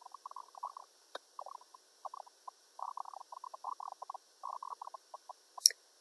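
Quiet room tone with faint, irregular flecks of background noise, and a computer mouse clicking twice: faintly about a second in and more sharply near the end.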